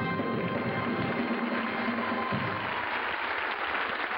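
Audience applauding over the band's final held chord at the end of the song. The chord stops a little over two seconds in, and the clapping carries on steadily.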